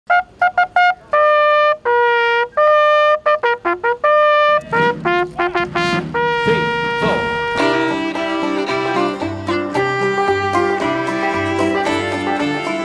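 A brass bugle sounds a call, starting with quick short notes and then held notes. About two-thirds of the way through, a fuller music track with a low stepping bass line comes in.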